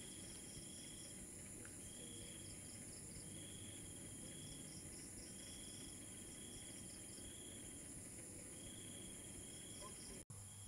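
Faint night insects: crickets trilling in repeated bursts of about a second each, over a steady high-pitched drone.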